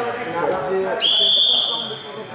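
Wrestling referee's whistle: one long, steady blast starting about a second in and lasting about a second, with voices calling out just before it.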